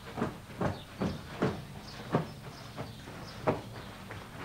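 Footsteps in a carpeted hallway, an uneven run of soft thumps about two a second.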